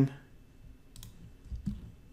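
A single computer mouse click about a second in, selecting an item from a menu, over faint room tone.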